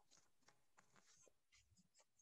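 Near silence: faint scattered clicks and scratchy ticks over an open microphone's room tone.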